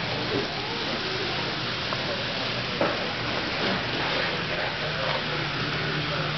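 Indistinct background voices over a steady hiss-like room noise and low hum, with one short click about three seconds in.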